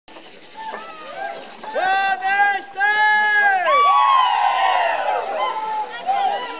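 Fulni-ô ritual chant starting up: a high male voice holds a long call in two phrases from about two seconds in, then several voices join in overlapping cries that fall in pitch. Crowd chatter runs underneath.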